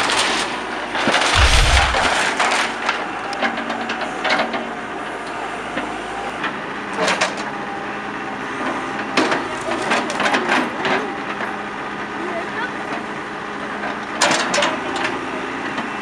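John Deere backhoe loader demolishing a wooden house: its engine hums steadily while boards crack and splinter under the bucket, with sharp cracks about 7, 9, 10 and 14 seconds in.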